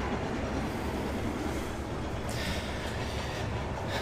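A steady, low mechanical hum and rumble, like machinery running, with a brief soft hiss or rustle about two and a half seconds in.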